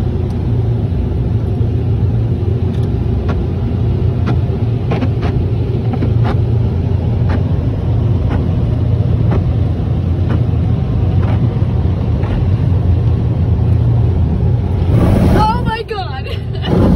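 Ryko onboard car-wash dryers blowing air over the car, a loud steady drone heard from inside the car, with scattered light clicks. The drone drops away shortly before the end as the car leaves the dryers.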